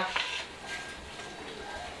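Light knocks and rubbing from a golok and its wooden sheath being handled, a few faint clicks in the first half second.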